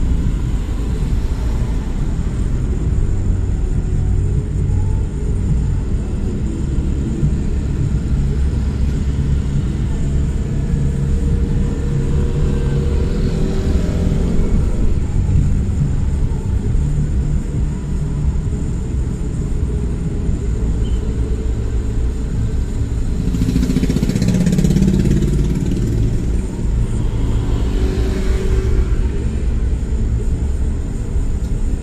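Steady low rumble of a vehicle driving on a city street, with motorcycles in the traffic around it; the noise swells briefly a few times in the second half.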